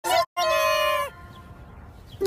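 A meow-like cartoon sound effect: one short blip, then a single held, pitched call of under a second that dips at its end, in sped-up, effect-processed cartoon audio.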